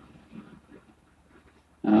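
A short pause in a man's speech with only faint low murmurs, then his voice resumes loudly near the end.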